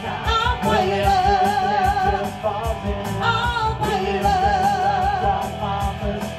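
Live rock band playing: electric guitar, bass guitar and drum kit with a steady beat, under a sung lead vocal held with vibrato.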